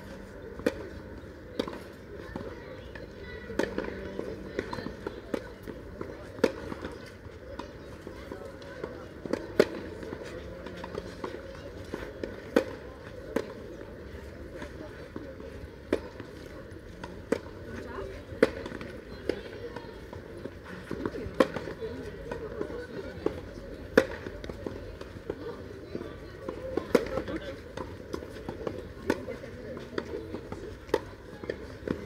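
Tennis balls struck by rackets during doubles play on a clay court: a string of sharp pops at irregular intervals, roughly one a second, some louder than others.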